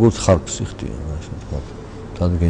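A man's voice speaking slowly: one short syllable right at the start, then a pause filled with faint low voiced sounds, as in a hesitation hum.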